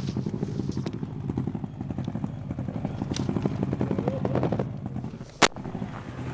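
Rally car engine idling steadily, with a single sharp bang about five and a half seconds in.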